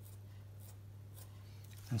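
Black Sharpie marker drawing on paper: a few faint, short scratchy strokes about half a second apart, over a steady low hum.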